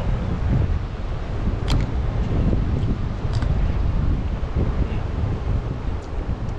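Wind rumbling steadily on the microphone. Two short, sharp clicks stand out, about one and a half and three and a half seconds in.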